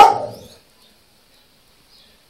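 A dog barks once: a single loud bark right at the start that fades within about half a second. After it the yard is nearly quiet.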